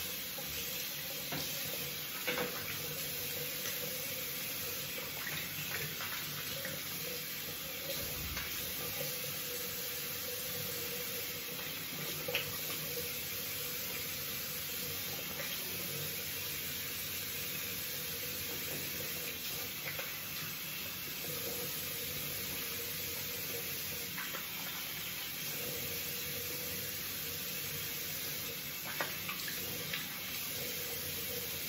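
Bathroom tap running steadily into a sink while a man splashes water on his face, rinsing shaving lather off between shaving passes, with a few brief splashes.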